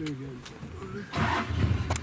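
Safari game-drive vehicle's engine starting about a second in, then running with a steady deep hum.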